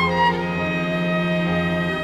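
A small string orchestra of violins, cellos and double bass playing live: long held notes over a sustained bass, the chord shifting just after the start and again at the end.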